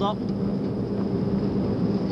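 Wind rumbling steadily on the camcorder microphone, with a low steady hum underneath.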